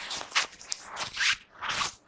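Four short scraping, rustling noises about half a second apart, with a sharp click between the first two.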